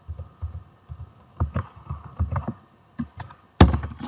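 Computer keyboard keystrokes: irregular, dull taps as lines of code are deleted, with a louder thump about three and a half seconds in.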